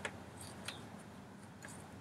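A few faint, irregularly spaced metallic clicks from a socket and extension turning a lawn mower's oil drain plug as it is threaded back in by hand.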